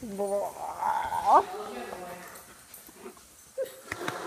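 A dog whining, with a short pitched call at the start and a sharp rising yelp about a second in.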